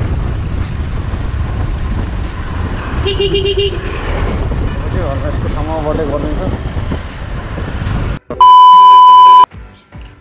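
Wind and engine noise on a camera mic while riding a motorcycle, with a vehicle horn sounding in quick pulses about three seconds in. Near the end the ride sound cuts out and a loud, steady high beep is heard for about a second.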